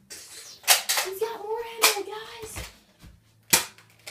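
Three sharp pops of a spring-powered Nerf dart blaster being fired, about a second in, just under two seconds in, and near the end.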